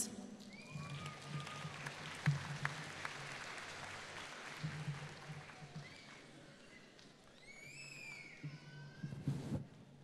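Audience applause for a graduate called to the stage, with a few cheering whoops, the clearest about eight seconds in.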